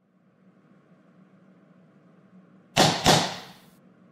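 Two quick whooshes close together near the end, the second trailing off, over a faint steady hum.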